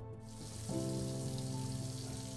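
A steady hiss of water running into a kitchen sink, with soft background music of sustained chords coming in under it about half a second in.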